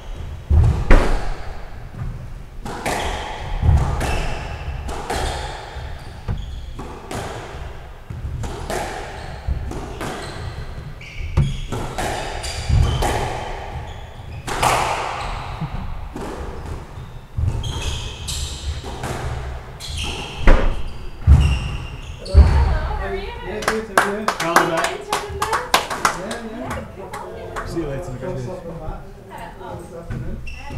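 Squash rally: a squash ball struck by rackets and hitting the walls of the court, sharp echoing impacts about one to two a second, with shoe squeaks on the wooden floor between them. The steady exchange gives way to a denser patter of small clicks about 23 seconds in.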